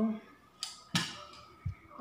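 A ceramic plate carrying a fork and knife being set down on a table: two sharp clicks of metal on china, then a dull knock.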